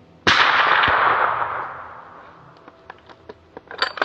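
A single rifle shot about a quarter second in, its report rolling away over about two seconds.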